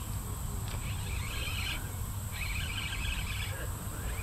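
An insect buzzing in two high, rasping bursts, each about a second long, over a low steady rumble.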